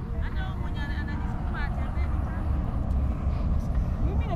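Steady low rumble of wind buffeting the microphone, with faint voices of people calling out now and then.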